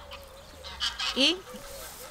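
A farm bird calling: short, high honk-like calls close together about a second in.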